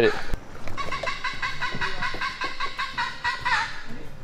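A red-throated caracara calling from high in the forest canopy: a fast run of repeated notes, about five a second, starting about a second in and stopping just before the end.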